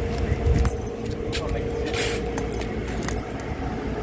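Scattered light clicks and jingles, over a steady low hum and a rumble of street noise, with a louder thump about half a second in.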